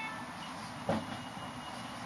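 Marker pen writing on a whiteboard: a faint thin squeak and a light tap about a second in, over low room hiss.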